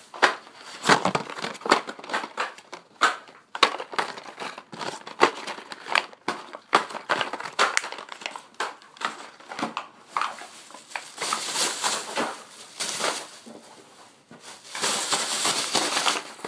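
A plastic shopping bag crinkling and rustling as carded die-cast toy cars are handled and crammed into it, with many small irregular crackles and clicks of plastic and card. The rustling is heaviest in the middle and near the end.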